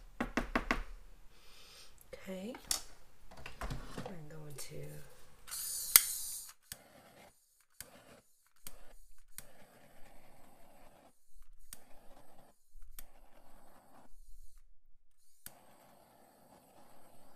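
Small clicks and taps of paint supplies being handled: a quick run of clicks at first, a short hiss ending in a sharp click about six seconds in, then faint scattered ticks. Some low murmuring in the first few seconds.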